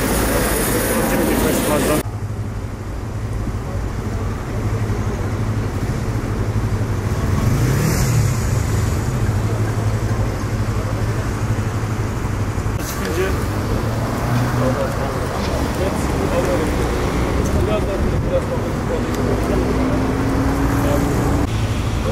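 Road traffic: a steady low engine hum close by, with cars passing. One passes about 8 s in, and near the end a vehicle's pitch rises as it accelerates away.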